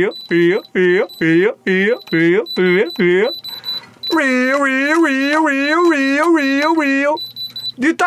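Handheld electronic diamond testers giving a thin, high-pitched beep broken into short pulses, under a man chanting "real" over and over. His chant runs together into one wavering sung line from about halfway through.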